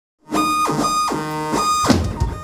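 Loud, distorted electric guitars playing live, holding chords that change about every half second with downward slides between them. A drum hit lands near the end.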